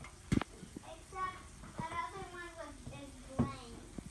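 Two sharp knocks on an aluminium stepladder, one just after the start and one near the end, with a child's soft voice murmuring between them.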